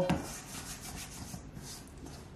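Floured fingers rubbing and scraping wet, sticky bread dough off the sides of a metal mixing bowl, a soft, uneven scraping.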